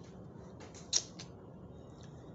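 A few short, sharp clicks about a second in, one much louder than the rest, over a steady low room hum.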